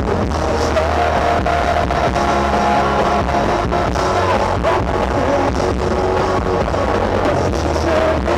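A rock band playing live, with electric guitar over a steady drum beat of about two hits a second, recorded loud from the audience.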